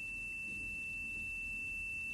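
A steady, high-pitched electronic tone held at one unchanging pitch over a quiet background.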